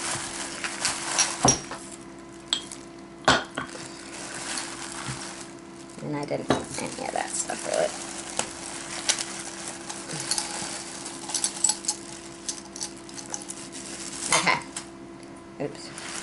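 Thin plastic shopping bag rustling and crinkling as hands dig through it, with scattered sharp clicks and clinks of small glass pieces, a few of them standing out loud.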